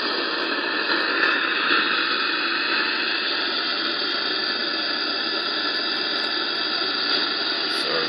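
Steady radio static hiss from SDR# software demodulating an RTL-SDR dongle's signal at 137.2 MHz with no station coming in: only receiver noise.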